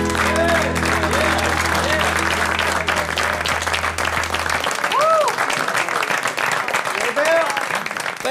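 Studio audience applauding as the band's last chord rings out under the clapping, the low held notes stopping about halfway through. Voices call out over the applause.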